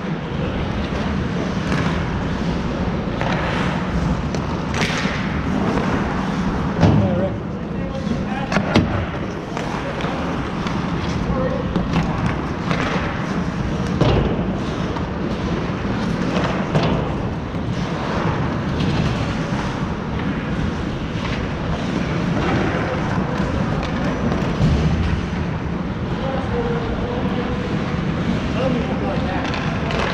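Ice hockey game sounds in an indoor rink: a steady wash of skates on the ice under indistinct players' calls, broken by sharp knocks, the loudest about seven and nine seconds in.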